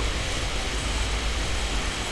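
Steady background hiss with a low hum underneath: the room noise of the recording microphone, with no distinct event.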